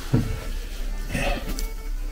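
Background music, with a brief snatch of a man's voice a little over a second in.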